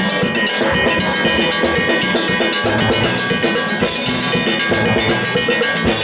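Steel orchestra playing live: many steel pans struck with sticks, with melody and chords over a fast, steady percussion beat.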